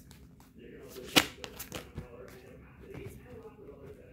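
Tarot deck being shuffled and handled by hand: a run of short card flicks and taps, with one sharp snap a little over a second in.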